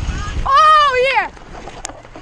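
A loud, high-pitched yell lasting under a second, held briefly and then falling off in pitch. It is heard over wind and trail rumble on the microphone, and the rumble drops away after the yell.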